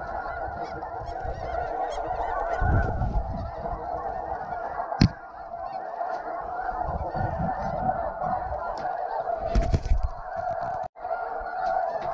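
A large flock of snow and Ross's geese calling overhead: a dense, unbroken din of many overlapping honks and yelps. A single sharp knock comes about five seconds in, and low rumbles, likely wind on the microphone, come and go underneath.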